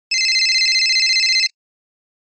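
A telephone ringing: one high, fast-trilling ring lasting about a second and a half, which cuts off suddenly.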